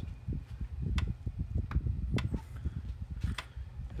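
PEL 609 electric fence charger clicking every second or so as it fires its pulses. This shows the resoldered circuit is working again.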